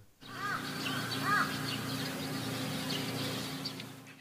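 Bird calls over a steady low hum: two short arched calls about a second apart, with faint small chirps throughout.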